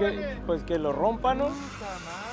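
Men's voices talking over the low rumble of a sportfishing boat under way. About one and a half seconds in, a steady hiss of wind and water rises.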